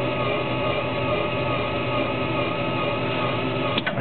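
Electric linear actuator motor running steadily with an even whir, tilting the Craftsman snow blower's chute deflector up and down.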